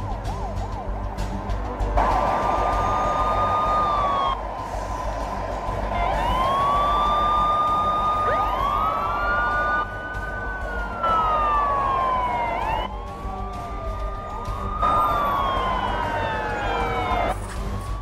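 Several police sirens wailing at once, their overlapping tones rising and falling, coming in about two seconds in.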